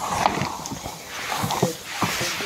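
Hands mixing cattle fodder of dry chopped straw, green fodder and mustard cake in a plastic tub: a rustling of the fodder with scattered small clicks.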